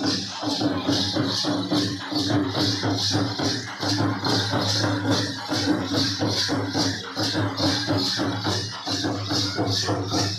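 Gondi Dandar dance music: a quick steady beat of jingling bells, with drum strokes and a steady droning tone beneath.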